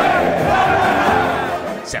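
Crowd of Rayados football fans shouting a chant together, loud and dense, cutting off suddenly near the end.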